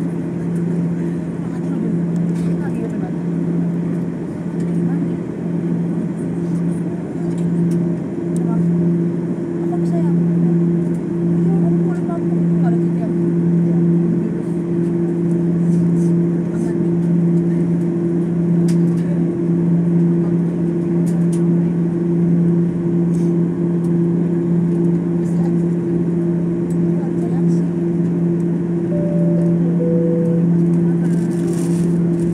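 Airliner cabin noise while taxiing: the jet engines' steady low drone, with a second tone above it, over a constant rush of noise.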